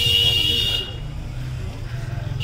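A high-pitched, buzzy vehicle horn sounds once for just under a second, over the steady low rumble of street traffic.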